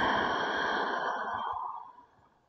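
A woman's long audible exhale, a breathy sigh through the mouth lasting nearly two seconds and fading away near the end.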